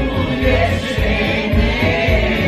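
Voices singing together into a microphone over backing music with a steady low beat.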